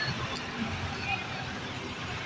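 Busy street ambience: steady traffic noise with the murmur of passers-by's voices.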